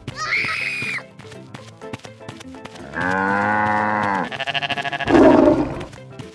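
Animal call sound effects over cartoon background music: a short high call at the start, then a long call about halfway through that holds steady and falls away at the end. A quick fluttering sound follows, then a short, loud, rough burst about five seconds in.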